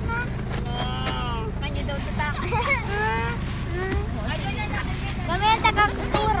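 Several people talking and exclaiming at once, over the steady low rumble of a vehicle cabin; the voices grow louder near the end.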